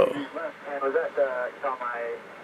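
A man's voice, talking softly and indistinctly.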